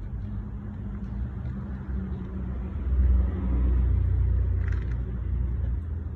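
Low rumble of a motor vehicle with a steady low hum, swelling to its loudest about three seconds in and easing off toward the end.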